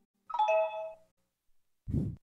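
A short chime sound effect: a quick falling run of bell-like notes, like a doorbell ding-dong, ringing out for under a second. A brief low thud follows near the end.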